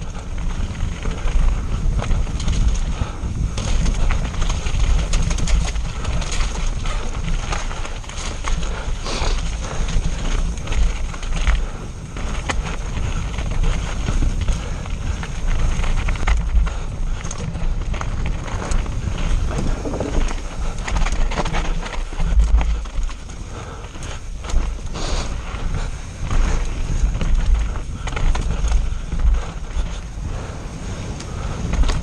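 Mountain bike descending a rough forest trail at speed, heard from a bike-mounted camera: wind rushing over the microphone with a heavy rumble, and a continuous rattle of frequent knocks and clatters as the bike runs over roots, rocks and boardwalk planks.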